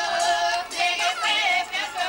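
A group of voices singing together in a steady rhythm, with long held notes.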